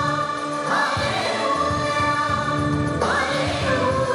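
Devotional song sung by a choir: held sung notes, with a new phrase starting about a second in and another near the end.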